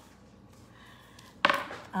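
Quiet room tone, then a single sharp knock about a second and a half in that dies away quickly.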